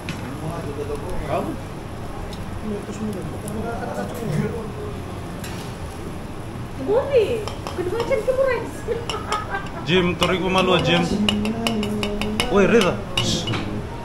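Metal tongs and dishes clinking at a tabletop barbecue grill under men's talk, the clinks coming thicker in the last few seconds.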